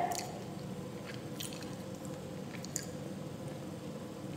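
Faint sounds of eating: fingers picking at a small piece of fried food, with a few soft, scattered clicks over low room noise.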